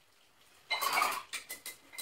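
Paintbrush clattering and tapping against a hard paint jar or rinse pot, with a slight ring: a rattle of about half a second, then three or four quick taps.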